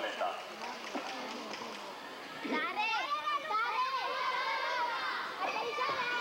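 Many young girls' voices calling out and chattering over each other, growing louder and higher-pitched from about two and a half seconds in.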